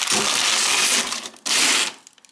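Packaging of frozen hamburgers being handled, crinkling and rustling for over a second, then a second shorter burst of crinkling.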